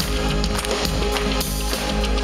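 Live synth-pop band playing: synthesizer lines over drums, heard through the PA from the crowd.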